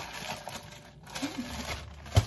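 Plastic postal mailer bag crinkling and rustling as it is handled and pulled open.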